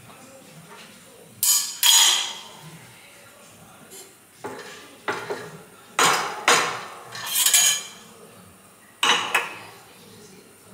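Metal knocks and clanks, about ten in uneven groups, each ringing briefly: a steel crankshaft assembly being worked in a steel press fixture.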